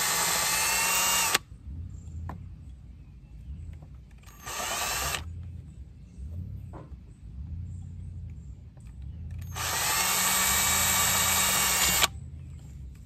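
Cordless drill boring a pilot hole into the metal of an outboard motor's block, run slowly in short bursts: it runs for about a second and a half and stops, gives a brief burst, spinning up with a rising whine, around the middle, then runs again for the last two seconds or so.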